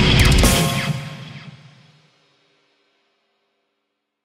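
Ending of a heavy metal song: the band hits a few final drum and cymbal strikes on a last chord, which rings out and fades away by about two seconds in.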